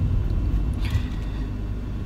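Steady low rumble of a small car heard from inside the cabin while it is being driven.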